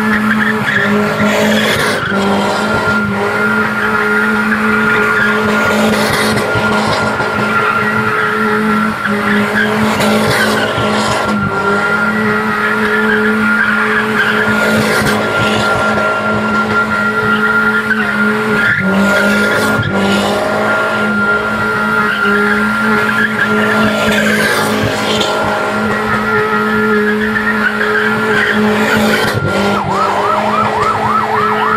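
Car tyres squealing in a long, unbroken screech over the running engine as a car spins doughnuts, throwing up tyre smoke.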